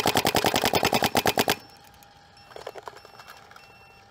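Paintball marker firing a rapid string of paintballs, about nine shots a second, that stops about a second and a half in.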